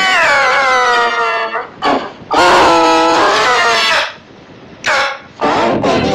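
A small child's tantrum: long wailing cries, pitch-shifted by a 'G Major' effects edit. The first wail falls in pitch, then comes a short cry, a long steady wail, and two more cries near the end, with brief gaps between them.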